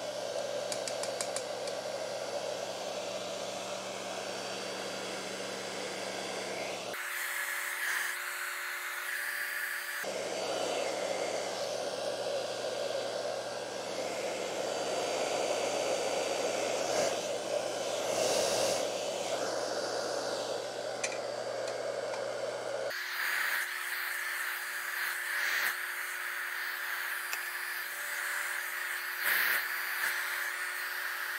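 Handheld hair dryer blowing steadily, drying wet alcohol ink on linen. Its tone shifts to a thinner, higher hum for a few seconds about a quarter of the way in, and again for the last part.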